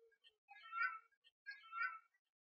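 Two short high-pitched calls, about a second apart, each lasting roughly half a second.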